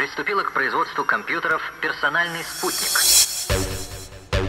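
A voice over the club sound system, then a white-noise riser sweeping up for about a second, then the kick drum and bass of an electronic dance track coming in near the end.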